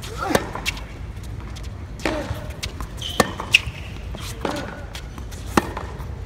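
Tennis rally on a hard court: sharp racket-on-ball hits and ball bounces every second or two, the loudest hit just after the start. Short voice-like grunts and a brief high squeak come between the hits, over steady arena noise.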